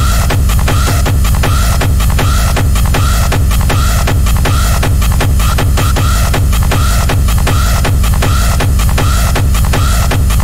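Fast techno track with a steady kick drum and a short synth figure repeating over it.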